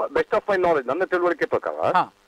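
Only speech: a person talking without pause, stopping abruptly at the very end.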